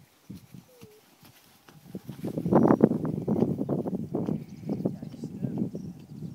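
A person's voice talking indistinctly, starting about two seconds in after a mostly quiet start.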